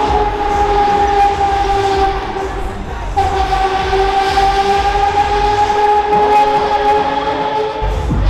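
A horn sounding two long, steady blasts, the first about three seconds long and the second about five.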